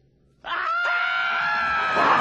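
Near silence, then about half a second in a long panicked scream from animated cartoon characters starts up, held on one steady pitch.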